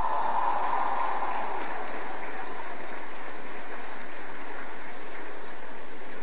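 Large audience in a hall applauding, a steady even sound of many hands clapping.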